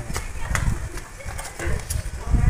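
Wind buffeting the microphone in a low rumble, with three sharp knocks and a brief distant voice.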